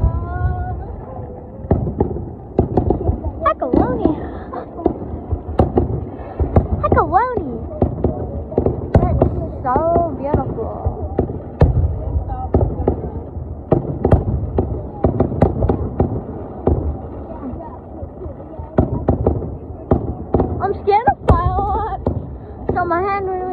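Fireworks going off in a rapid, irregular string of sharp pops and bangs, with people's voices calling out now and then.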